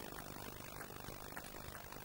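Faint, steady hall ambience with a few soft clicks of a celluloid table tennis ball striking the bats and table during a rally.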